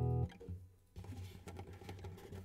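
An acoustic guitar chord, picked up by a clip-on soundhole microphone, is cut off by a hand damping the strings about a quarter second in. After a short quiet, faint bumps and rubbing follow as the microphone is handled in the soundhole.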